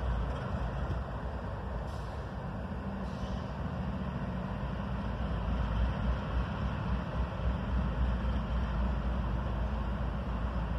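Diesel locomotive engine rumbling low and steady as the train approaches slowly, growing somewhat louder about halfway through.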